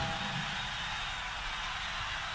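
Steady low-level hiss with a low hum underneath, the background noise of an old recording, with no distinct events.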